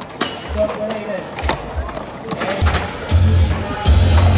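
Skateboards on concrete and rails, with a few sharp clacks of board impacts in the first second and a half, under bass-heavy music that gets much louder about two and a half seconds in.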